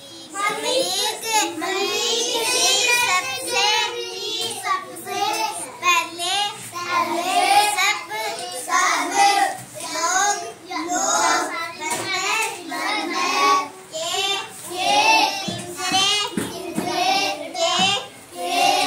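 A young girl's voice chanting a rhyme aloud from a book in a sing-song way, in short phrases with brief breaks.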